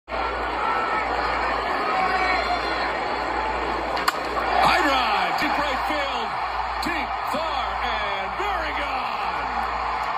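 Ballpark crowd noise, then the sharp crack of a bat hitting a baseball about four seconds in, and the crowd rising into cheering for a home run.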